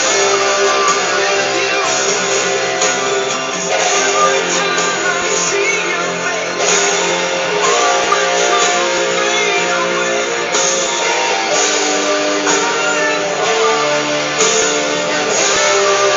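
Guitar played with strummed and picked chords, with new chords struck every few seconds and no singing.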